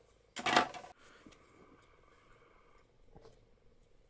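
A short clatter of plastic coolant-hose helping-hand arms being gathered up and moved on a wooden board under a second in, then a few faint clicks about three seconds in.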